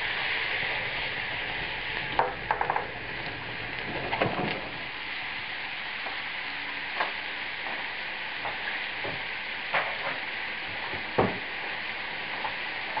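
Beef steaks frying in a pan of butter sauce just flambéed with cognac: a steady sizzle, broken by a few sharp pops and crackles.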